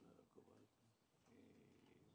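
Near silence: room tone with a faint, indistinct murmur.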